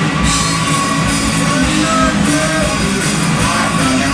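Punk band playing loud and continuous live: electric guitar and a drum kit with cymbals.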